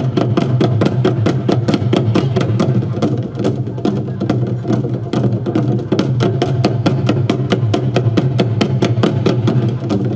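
Korean barrel drums (buk) played by an ensemble with wooden sticks, many sharp strokes a second in a fast, driving rhythm, over a steady low tone underneath.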